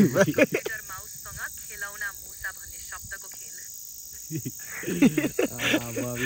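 A steady, high-pitched chorus of insects chirring without a break, under people's voices that are loudest at the start and again near the end.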